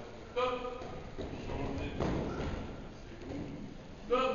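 Young pupils' voices calling out briefly in a reverberant room, with a thump about two seconds in.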